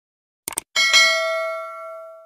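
Subscribe-button animation sound effect: two quick clicks, then a bright notification-bell chime that rings and fades away over about a second and a half.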